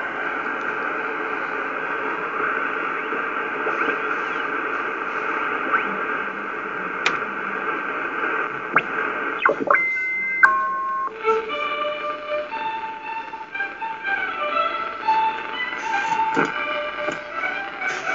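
Kenwood R-2000 shortwave receiver's speaker giving a steady hiss of band noise. About nine and a half seconds in, as it is tuned onto a station, three held tones step down in pitch, then a simple melody of short notes comes through.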